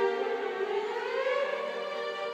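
Orchestral strings playing classical music, with violins, cellos and double bass together. About half a second in, the melody slides smoothly upward in pitch for about a second.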